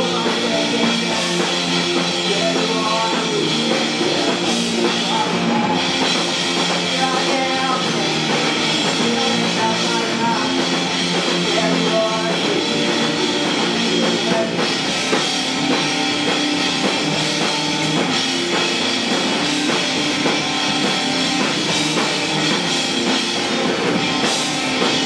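A live rock band playing steadily: electric guitar and a drum kit, with a sung vocal.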